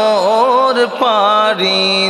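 A man singing a Bengali Islamic gojol, holding long notes that waver and bend, with a brief break and a new held note about a second in.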